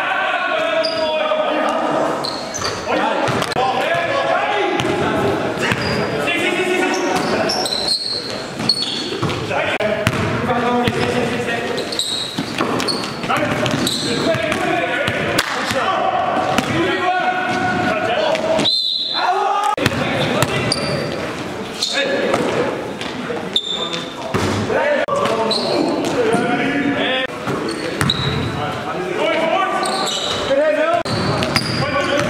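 Basketball game in an echoing gym: the ball bouncing on the court floor, short high sneaker squeaks and players' voices calling out.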